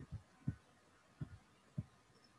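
Faint, soft low thumps or taps, about five in two seconds at an uneven pace.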